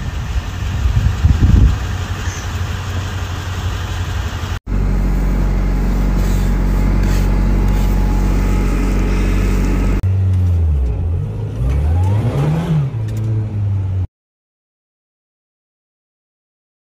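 Car engines in several short clips: a noisy rev about a second or two in, a steady engine drone through the middle, then revs rising and falling near the end before the sound cuts off abruptly.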